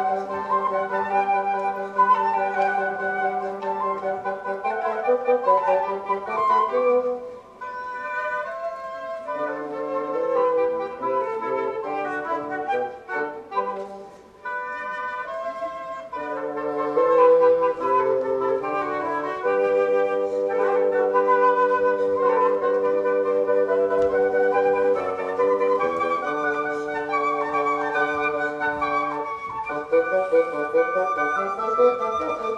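Woodwind trio of flute, bassoon and clarinet playing a classical piece, the bassoon holding low notes under the flute and clarinet lines. The playing thins out briefly about seven and fourteen seconds in before the three voices come back together.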